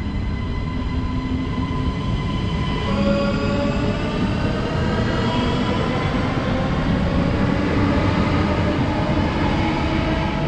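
NMBS/SNCB Siemens Desiro ML (AM08) electric multiple unit running past on the near track over a steady rumble of wheels on rail. From about three seconds in its traction motors whine, the pitch climbing slowly as the train gathers speed.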